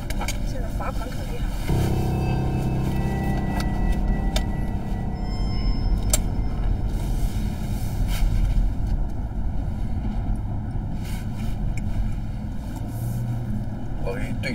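Steady road noise inside a moving car's cabin, with a held background-music bed coming in about two seconds in.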